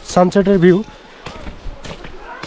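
A man speaks a few words, then about three short, sharp knocks follow in the second second.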